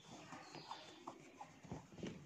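Faint, scattered small clicks and taps, a few in two seconds, over low room noise.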